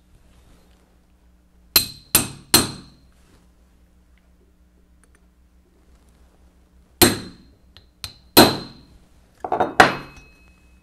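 A metal block used as a makeshift hammer strikes a pin in a mechanical calculator's frame part to drive it out. There are three quick sharp metal blows with a brief bright ring, a pause of several seconds, then more blows and a clatter of metal near the end. The pin is not yet coming out.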